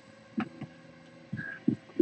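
Trading cards being handled and set down on a tabletop: a few soft, short taps and shuffles.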